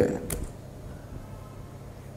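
A man's spoken word trailing off, then a pause with a faint steady low hum and a single short click about a third of a second in.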